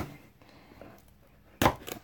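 Knocks from a shipping package being handled and worked open on a table: a sharp knock at the start, quiet handling, then a louder thump near the end.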